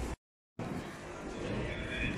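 Steady background ambience of a busy airport terminal, a wash of crowd and building noise, broken by a split second of dead silence just after the start where the recording is cut.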